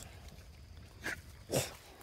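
A bully-breed dog sniffing in tall grass: two short snuffs of breath, a faint one about a second in and a stronger one soon after.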